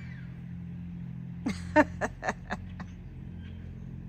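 A steady low hum, with a quick run of about six short, sharp sounds between about one and a half and three seconds in, the second of them the loudest.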